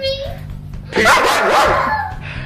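German Shepherd dog vocalizing in play: a brief whine at the start, then a louder burst of barks and yips about a second in that lasts nearly a second.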